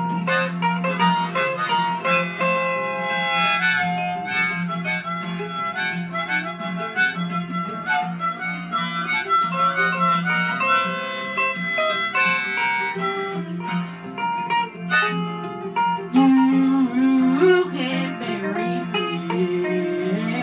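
Harmonica playing an instrumental break over a karaoke backing track with guitar. A low note is held throughout, the melody moves above it, and the music gets louder near the end.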